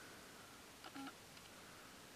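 Near silence: faint room tone, with one brief, faint pitched sound about a second in.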